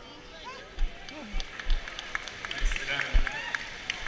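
Dancers chattering and laughing together on a wooden gym floor, with heavy footfalls thumping on the boards and sharp claps growing more frequent in the second half.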